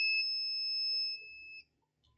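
Digital multimeter's continuity beeper giving one steady high-pitched beep while the probes touch a near-zero-resistance path, cutting off about one and a half seconds in as the contact is broken.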